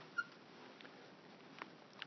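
Near silence, with a brief faint squeak of a dry-erase marker on the whiteboard just after the start and a faint tick later on.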